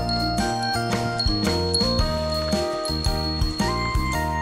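Background music: a melody of bell-like jingling tones over a steady beat.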